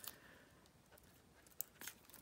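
Near silence, with a few faint clicks and rustles of cardstock being handled, two of them close together near the end.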